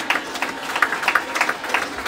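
A small church congregation clapping: scattered, uneven hand claps, several a second, rather than a dense roar of applause.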